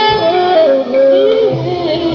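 Live pop ballad performance: a lead melody moving in stepped, held notes over band accompaniment.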